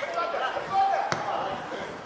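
A football kicked with a sharp thud about a second in, amid players' shouts on the pitch.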